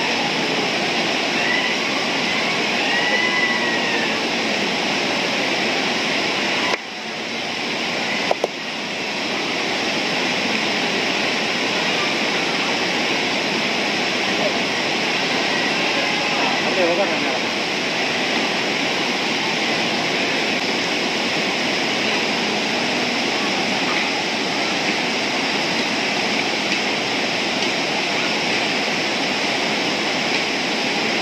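Steady rushing of river rapids tumbling over rocks, a loud, even wash of water noise that dips briefly about seven seconds in.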